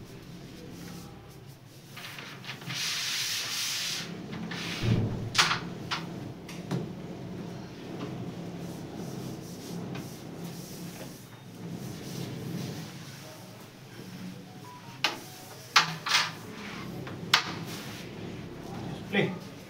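A brush and hands sweeping and rubbing across a powdered wooden carrom board, a dry hiss, loudest about three seconds in. Sharp clicks come about five seconds in and again in a short cluster near the end.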